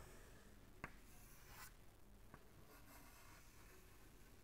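Faint chalk scraping on a chalkboard as a circle is drawn, with a light tap of the chalk just before a second in.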